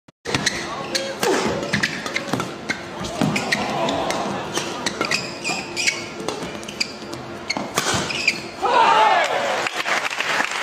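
A busy run of sharp impacts and short high squeaks with shouting voices, ending in a loud shout about nine seconds in.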